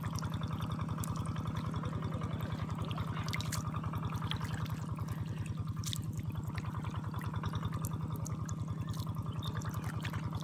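Faint ticks and small splashes of shrimp flicking about in shallow water on the mud. Under them runs a steady low chugging drone, like a small engine running.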